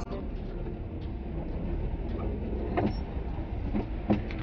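Inside a car creeping slowly in traffic: a steady low rumble of engine and road, with a few faint knocks.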